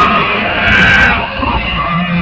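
Heavy metal cover song: loud, dense band sound with harsh, growled singing.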